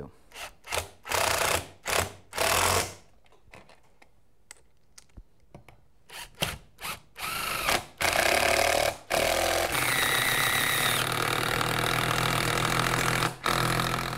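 Cordless impact driver driving coarse-thread lag screws through a steel bracket and the weatherstripping into the wood inside the end of a garage door panel. There are short bursts in the first few seconds, then a steady run of about five seconds near the end that stops suddenly.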